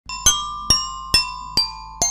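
Intro jingle of bright, bell-like mallet notes: four struck notes about half a second apart, each left ringing as it fades.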